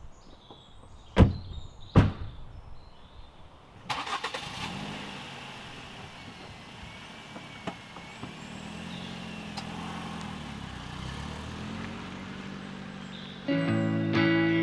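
Car doors of a Ford Focus hatchback slammed shut twice, about a second apart; then the engine starts about four seconds in and runs as the car pulls away. Guitar music comes in just before the end.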